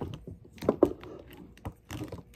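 Plastic wrestling action figures handled and knocked against each other and the toy ring: a few light clicks and taps, two near the middle and two near the end.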